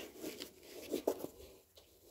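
Faint rustling and a few light knocks as a hockey skate is handled and an insole is pushed into the boot.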